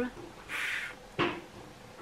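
A woman's voice sounding out a letter sound: a short hissed 'fff' about half a second in, then a brief sharp, clipped sound about a second later.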